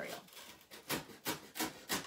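A knife sawing through foam core board along a bent fold, in short, even scratchy strokes, about three a second.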